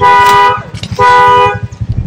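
Car horn sounding two short, steady blasts of about half a second each, half a second apart.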